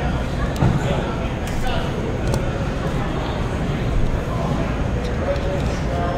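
A cardboard trading-card box being opened and handled, with a few light clicks and scuffs, over steady room noise and faint voices in the background.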